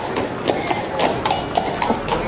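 Horse hooves clip-clopping on a paved street, about four strikes a second, over a steady hum of street noise.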